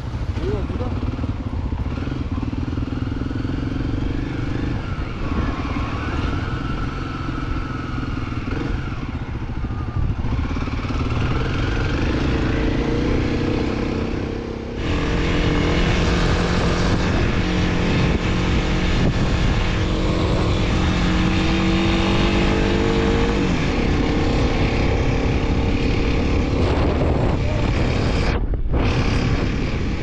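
Dual-sport motorcycle engine running on a gravel road, its pitch rising and falling with the throttle, under wind noise on the microphone. The sound changes abruptly about halfway through.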